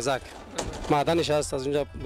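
A song with a solo singing voice holding long, wavering notes.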